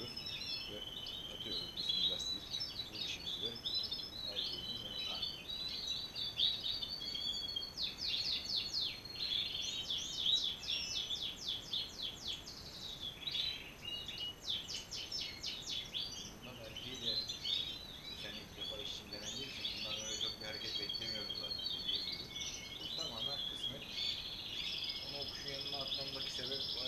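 Many caged European goldfinches singing and chirping together in a steady chorus, broken by runs of fast trills about eight and fourteen seconds in.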